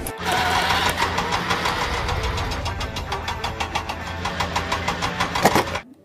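Engine sound for a toy forklift: a steady low running hum with a rapid, even knocking beat, cutting off suddenly shortly before the end.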